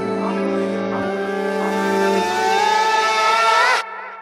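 Music with steady held tones under a rising, swelling sweep that builds for the last couple of seconds, then cuts off abruptly just before the end, leaving a faint wavering tone fading out.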